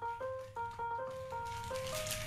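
Background music: a simple electronic chime-like melody of short, evenly held notes, several a second.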